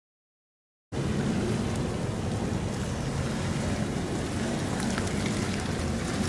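Steady rain falling, heard as a constant hiss with a heavy low rumble underneath. It starts abruptly about a second in, after silence.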